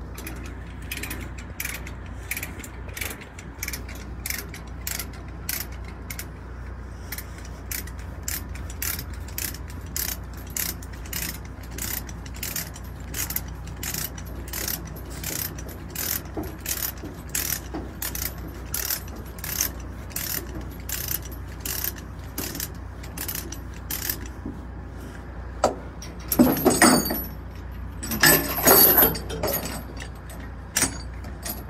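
Ratchet-type chain load binder being cranked to tension a tie-down chain, its pawl clicking steadily about three times every two seconds. Near the end come two louder bursts of metal rattling.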